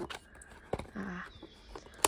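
Cardboard trading-card blaster box handled and turned over in the hands, with a sharp light tap about three quarters of a second in.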